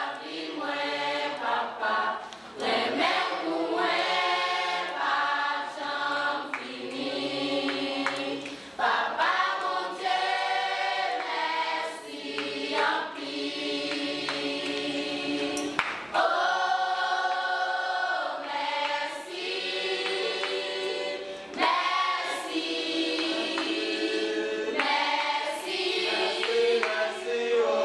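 A choir of mostly young women's voices singing together in harmony, with long held notes.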